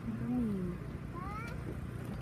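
A person's voice: a drawn-out vocal sound that falls in pitch near the start, then a short higher call rising in pitch about halfway through, over a steady background murmur.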